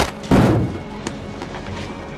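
A heavy thud about a third of a second in as a person is slammed face-down onto a car's hood, with a lighter knock a little after.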